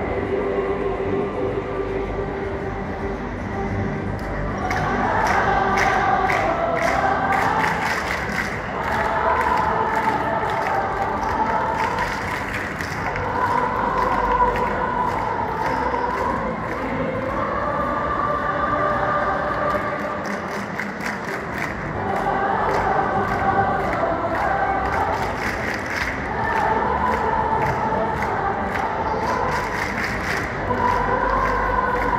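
A large choir singing together in long phrases lasting a few seconds each, with a crisp rhythmic beat coming in about four seconds in.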